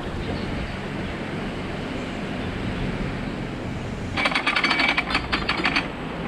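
Steady low rumble of a narrowboat's engine running in a lock. About four seconds in, a rapid burst of clicking lasting about two seconds.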